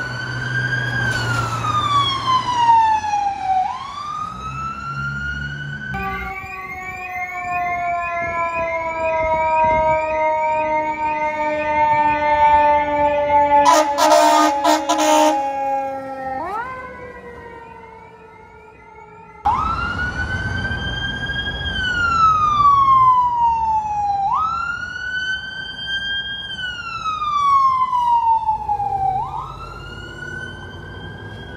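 Emergency vehicle sirens going past in turn: an ambulance siren wailing up and down, then a fire engine's long, slowly falling siren tone with a short burst of horn blasts about halfway through, and after a brief lull a battalion chief's vehicle siren wailing up and down.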